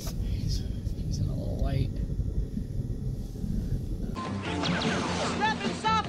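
Low, steady rumble inside a car's cabin. About four seconds in it cuts abruptly to the soundtrack of an animated cartoon, with music and character voices.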